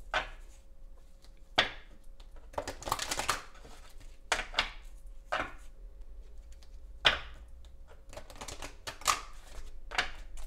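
A deck of The Good Tarot cards being shuffled by hand, the cards slapping and riffling against each other in short, irregular bursts of clicks.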